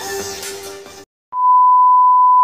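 Electronic background music fades and cuts off about a second in. After a brief silence, a television test-pattern tone begins: one steady high beep.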